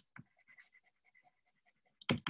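Near silence with faint taps and scratches of a stylus writing on a tablet screen, a small click just after the start and scattered soft ticks after it.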